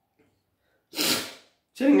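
A short, sharp burst of breath from a man, about a second in, lasting about half a second and as loud as his speech. He starts speaking near the end.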